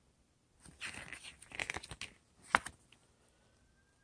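Paper pages of a stapled booklet being turned by hand: a crinkly rustle for about a second and a half, then one sharp paper snap as the page flips over.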